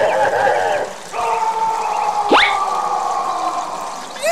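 A wavering voice-like 'oh' fades out, then a long steady held tone with several overtones sounds, crossed about two and a half seconds in by a quick rising whistle-like glide: dubbed-in cartoon sound effects.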